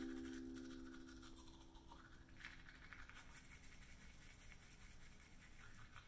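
A ukulele chord rings out and dies away over the first two seconds. Then comes faint toothbrush scrubbing on teeth in short, irregular runs of strokes.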